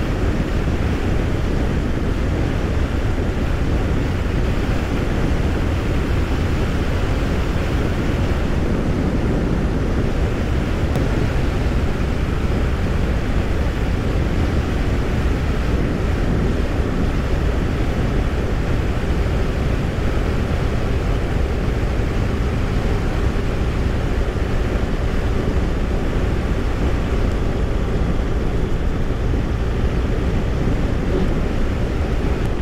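Steady wind rush with engine and tyre drone from a 2016 BMW R1200RS motorcycle cruising at road speed on a coarse chip-seal surface, even and unbroken throughout.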